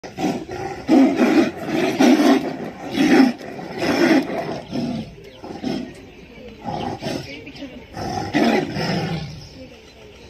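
Two Bengal tigers roaring and growling at each other in a territorial face-off. Loud roars come about once a second for the first few seconds, then weaker growls follow until near the end.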